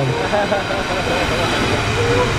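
Steady low rumbling background noise with faint laughter over it.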